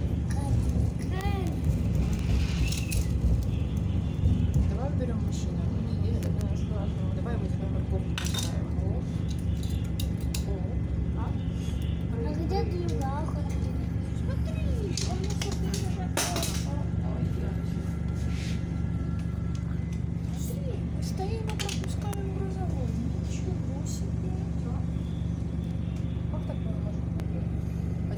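Steady low hum and rumble of an EKr1 electric passenger train under way, heard from inside the carriage, with scattered light clicks and knocks.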